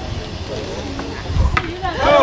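Faint spectator chatter, then a sharp knock about one and a half seconds in as the pitched baseball strikes the batter.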